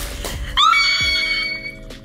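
A woman's high-pitched excited squeal, rising at the start and then held for just over a second, beginning about half a second in, over soft background music.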